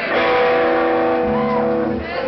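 Amplified electric guitar: a chord strummed once and left ringing, with a lower note joining a little past halfway.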